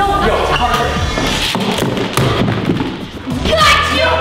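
Background music under excited voices, with a few dull thuds in the middle.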